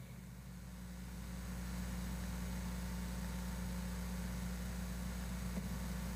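A steady low hum with faint hiss, swelling slightly over the first two seconds and then holding level.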